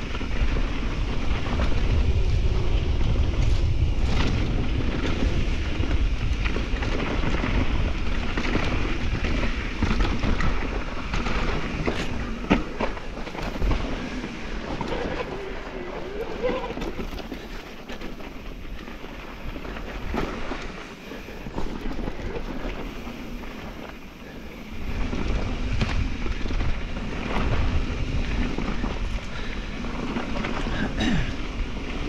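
Wind buffeting the microphone while a mountain bike runs down a dirt singletrack, with tyre noise and the bike rattling over the ground. The wind noise drops for a stretch in the middle, where scattered knocks stand out over rocky ground, and comes back strongly a few seconds before the end.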